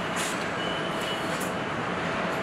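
Steady assembly-line factory noise: a continuous machinery din with a faint steady whine and two brief high hisses, one near the start and one about halfway through.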